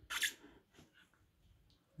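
Mostly near silence, with one short soft hiss near the start.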